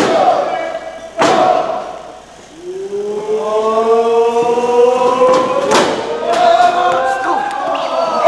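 Two heavy thuds of a wrestler's body slamming into the ring ropes and post, one about a second in and one near six seconds, echoing in a large hall. From about two and a half seconds on, a long held vocal call rises slowly in pitch.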